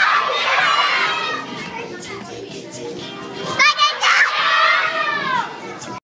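A hall full of children shouting and calling out over background music. Loud, high-pitched cries rise above the crowd near the start and again from about three and a half seconds in.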